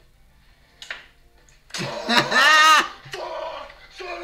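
A person's loud, high-pitched yell lasting about a second, beginning about two seconds in and wavering in pitch. It comes after a near-quiet start with one faint click.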